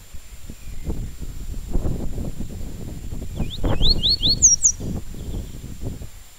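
Yellow-bellied seedeater (papa-capim) singing one short phrase a little past the middle: a quick run of about four rising notes, then two higher ones. Uneven low rumbling noise and a faint steady high whine run underneath.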